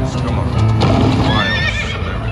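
Konami All Aboard slot machine playing a horse whinny sound effect over its game music as the black horse symbols land on the reels. The whinny is a high, wavering call in the second half.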